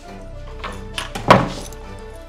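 A door shutting with a heavy thunk about halfway through, just after a couple of lighter clicks from the handle and latch, over background music.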